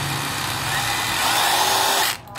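Makita three-function rotary hammer running in plain drill mode, spinning in reverse without hammering: a steady motor whir with a faint whine that rises slightly in pitch partway through.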